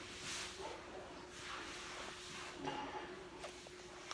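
A child drinking from a plastic bottle of iced tea: faint sips and breaths, with a short hum-like vocal sound just before the three-second mark. A faint steady hum runs underneath.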